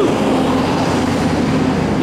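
A vehicle's steady low rumble and engine hum, filling the pause between sentences.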